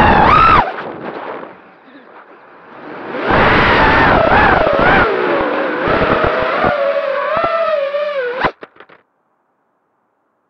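FPV racing quadcopter's brushless motors whining through its onboard camera, the pitch wavering up and down with the throttle over a rough buffeting of wind and prop wash. The sound falls away about a second in, comes back hard about three seconds in, and ends in a sharp knock as the quad hits the ground, after which it cuts to silence.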